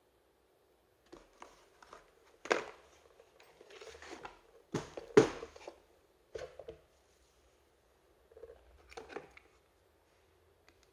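Handling of a plastic Einhell 18 V power-tool battery pack and its cardboard box: a string of knocks and clicks with rustling between them. The loudest knock comes about five seconds in, and there is a last cluster of rustling and clicks near the end.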